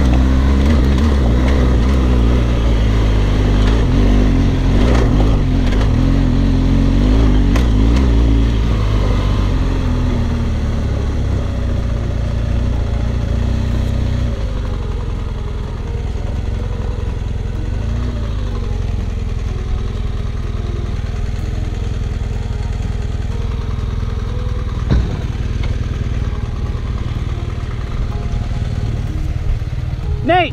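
Adventure motorcycle engine pulling hard up a steep, loose rocky climb, its note rising and falling with the throttle. The engine eases off after about eight seconds and settles lower from about fourteen seconds on. A single sharp knock comes about 25 seconds in.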